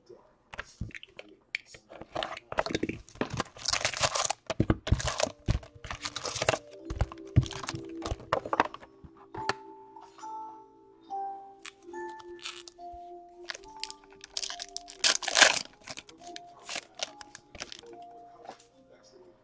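Sealed trading-card box and foil card packs being torn open by hand: irregular tearing, crinkling and crackling of cardboard and wrappers, loudest in a few sharp rips. A simple tune of held notes plays softly underneath from about seven seconds in.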